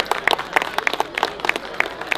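Audience applauding with hand claps, the individual claps distinct rather than merged into a roar.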